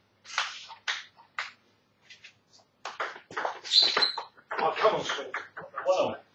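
Table tennis ball clicking sharply off bats and the table in a short exchange of serve and returns, about half a second apart. About halfway through comes a louder, busier stretch of mixed noise that includes voices.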